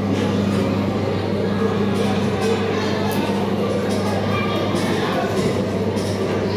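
Steady low electrical hum under background music and faint chatter, with no sudden sounds.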